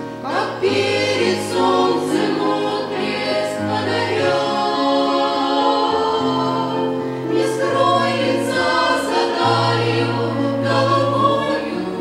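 A small group of women singing a Russian Christian hymn together, in harmony, over long held low accompaniment notes that change every second or two.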